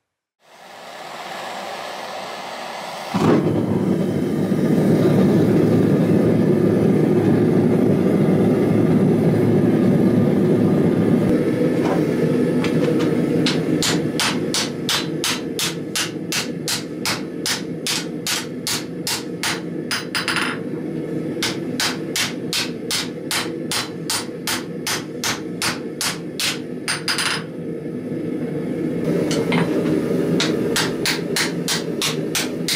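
A gas forge burner running with a steady rush from about three seconds in. From about halfway, a hammer strikes red-hot 5160 steel on an anvil at roughly three blows a second, flattening the knife blank, in two long runs with short pauses and a few more blows near the end.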